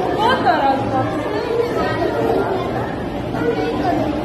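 Many young children's voices chattering and overlapping.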